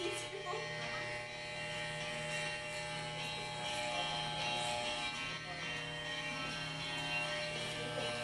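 Corded electric hair clippers buzzing steadily as they shear hair from a head.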